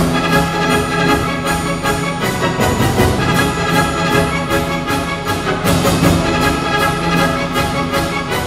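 Orchestral background music with a steady beat of about three strokes a second.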